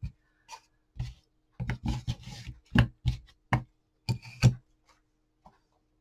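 Hands handling a thin wooden plank and wooden coasters on a tabletop: a string of short knocks and rubs as the pieces are shifted and set down, then it goes quiet near the end.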